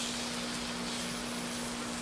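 Steady sizzling of oyster-omelette batter frying in the cups of an electric takoyaki pan, an even hiss with a faint steady hum under it.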